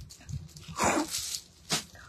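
Clear plastic garment polybag crinkling as it is handled and opened, with a louder crackle about a second in and a shorter one near the end.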